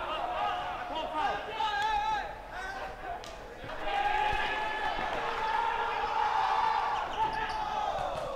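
Men's voices shouting on an outdoor basketball court, one call drawn out over several seconds in the second half, with a basketball bouncing on the court.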